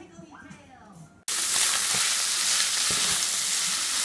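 Ground beef sizzling loudly in a frying pan as a spatula stirs and scrapes it. The sizzle cuts in suddenly about a second in.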